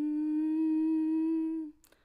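A woman humming one long, unaccompanied note: the pitch slides up into it, holds steady, and stops shortly before the end, followed by a small click.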